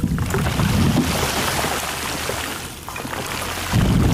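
Water sprayed from a handheld nozzle onto a microphone to imitate heavy rain: a dense, steady hiss. A heavy low rumble under it fades out about a second in and returns suddenly just before the end.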